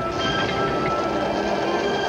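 Commercial background music of sustained synth-like tones, under a steady rushing, rumbling noise.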